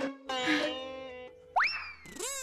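Comic sound-effect music sting. A held note rings and fades, then about one and a half seconds in a sharp upward-sliding 'boing' tone turns and glides back down.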